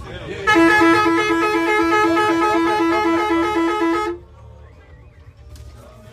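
A horn sounding loudly for about three and a half seconds in quick, even pulses, then stopping abruptly.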